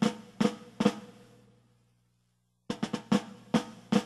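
Drum kit hits: a few sharp strikes in the first second, dying away to near silence, then a quick run of strikes from just under three seconds in.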